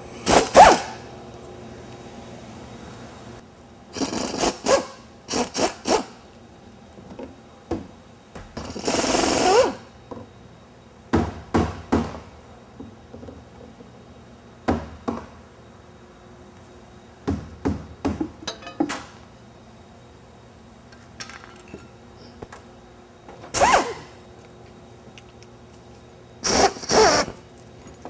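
Pneumatic wrench run in short bursts, unbolting the oil pickup tube and oil feed line from the underside of a CAT diesel engine block, with metal clicks and clinks between bursts.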